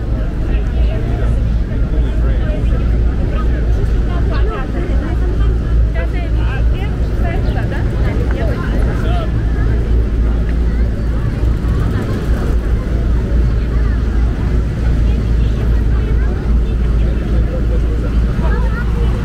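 Busy city street sound: passersby talking among themselves over a steady low rumble of traffic.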